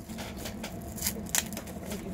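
Cellophane shrink-wrap being torn and peeled off a CD jewel case: a handful of short, sharp crinkles and rips.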